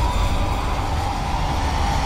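Cage lift rising up its shaft: a loud, steady mechanical rumble and rattle under a high whine that sinks slightly in pitch towards the end.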